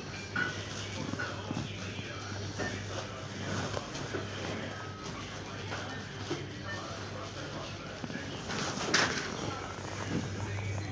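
Supermarket checkout-area ambience: indistinct voices of shoppers over background music, with a brief louder noise about nine seconds in.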